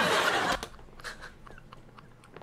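Hearty laughter that breaks off about half a second in, leaving only faint breaths, wheezes and small mouth clicks of silent, doubled-over laughing.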